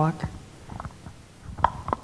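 Handling noise from a handheld stage microphone as it is passed from one speaker to the next: low rubbing, then a few short knocks near the end. A spoken word ends it at the very start.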